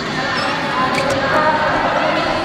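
A YOSAKOI dance team's voices calling out together, with a few short knocks.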